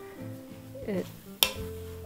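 Soft background music with a wooden spoon stirring shredded red cabbage in an enamelled pot, and one sharp knock about a second and a half in.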